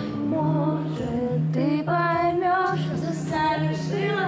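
A woman singing a song with held notes into a microphone, accompanied by a plucked acoustic guitar.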